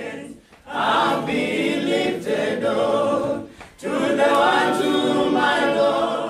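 A church choir singing gospel unaccompanied: two long phrases with a short break in between.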